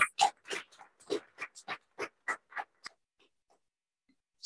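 Laughter in a string of short breathy bursts that grow fainter and die away about three seconds in.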